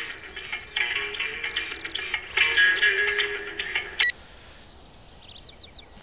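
A mobile phone ringtone plays in short musical phrases and stops abruptly about four seconds in as the call is answered.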